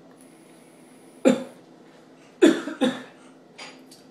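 A man coughing three times in quick succession, then once more faintly, after inhaling a strong hit from a vape box mod set at 4.5 volts on a 1.5-ohm atomizer.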